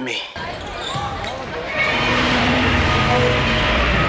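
Live basketball game sound in a high-school gym: crowd noise and scattered voices, with a basketball bouncing on the hardwood. The crowd noise swells about two seconds in and then holds steady.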